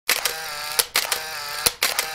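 Intro sound effect of a camera shutter: a click, a short steady motor whirr, then another click, repeated three times in quick succession.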